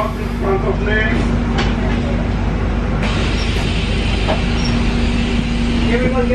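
Bus interior noise: a steady engine rumble with a constant low hum. The noise grows fuller about three seconds in.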